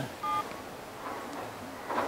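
Nokia keypad phone giving its key tones as a number is dialed: one short two-note beep about a quarter second in, then a fainter one about a second in.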